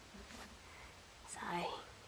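Quiet room tone, then a woman softly says a single word, "so", about a second and a half in.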